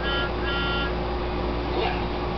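Two short electronic beeps in quick succession near the start, over a steady hum.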